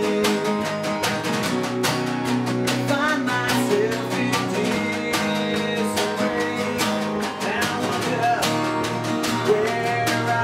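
Two acoustic guitars strummed in a steady rhythm while a man sings lead.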